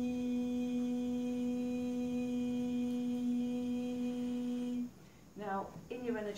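A woman humming one long, steady note that breaks off about five seconds in; a woman starts speaking just before the end.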